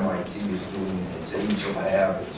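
A person speaking; the words were not picked up by the transcript.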